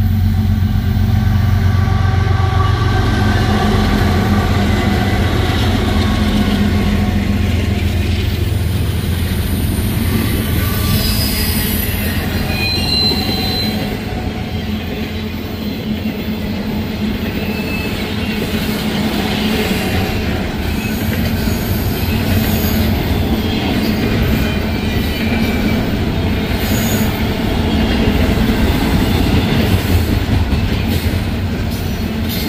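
Norfolk Southern diesel freight locomotives passing close by, their engine hum giving way after about eight seconds to the steady rumble and clatter of double-stack intermodal well cars rolling past. There are brief high-pitched wheel squeals around the middle.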